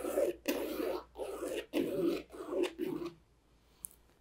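Thin stick dragged through wet acrylic paint across a canvas in quick short strokes, a soft scraping about twice a second that stops a little before the end, followed by one faint click.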